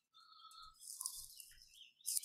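Faint computer keyboard typing, a few soft keystrokes, with faint short high chirps over it.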